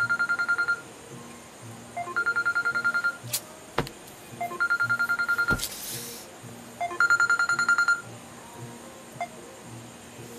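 Mobile phone ringing with a trilling electronic ringtone: four short bursts of rapid beeps, roughly two to two and a half seconds apart.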